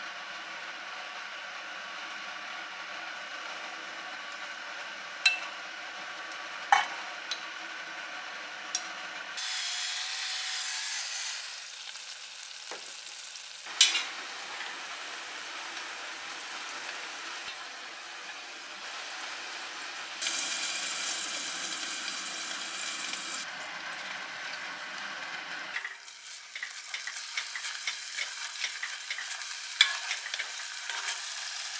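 Food sizzling in oil in an enameled cast-iron pot, a steady frying hiss that changes in loudness a few times, with a few sharp clicks of utensils. Near the end a wooden spatula stirs abalone innards frying in the pot, and the sizzle turns crackly.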